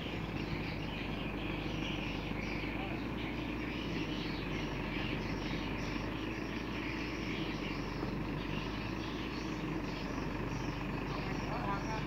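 Crane truck's engine running steadily at idle, a constant low rumble.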